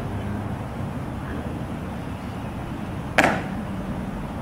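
One sharp slap about three seconds in, as ceremonial guards' hands strike their rifles in a manual-of-arms movement, over steady open-air background noise.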